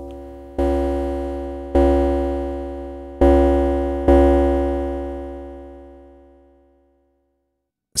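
Korg Volca Drum playing a melodic FM-modulated tone with wave folding and overdrive applied: a low note sounds four times at the same pitch, each struck and then decaying, with the last one ringing away over about three seconds.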